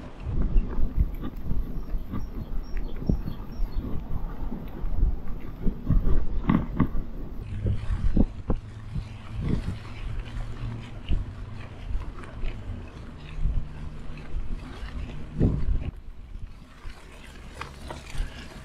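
Bicycle riding over a rough gravel towpath: tyre rumble with frequent knocks and rattles from the bike over bumps. A low steady hum joins from about eight seconds in.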